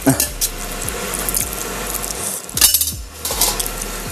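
Cutlery clinking and scraping against plates while people eat, scattered small clicks with one louder clatter a little past halfway.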